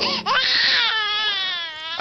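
A high-pitched crying wail: one long drawn-out cry whose pitch sinks slowly.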